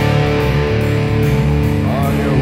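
Stoner rock instrumental passage, with electric guitar chords held steady over the low end and no singing.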